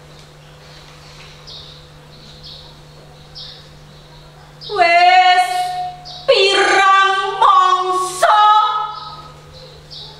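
A woman singing a few long, drawn-out notes in a Javanese geguritan recitation, starting about halfway through after a pause. Before that there is only a low steady hum and faint short high sounds about once a second.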